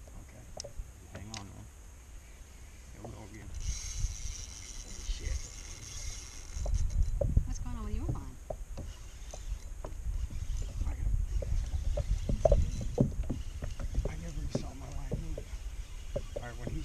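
Faint, indistinct talk over a low, uneven rumble, with a brief high hiss about four seconds in.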